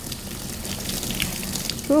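Handheld shower sprayer running, water spraying steadily onto a wet puppy's head and coat and draining into the tub, rinsing out the shampoo.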